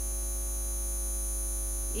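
Steady electrical mains hum in the microphone and sound system chain, with a faint steady high-pitched whine above it.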